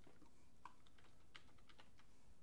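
Faint computer keyboard clicks: a dozen or so short, irregular key taps.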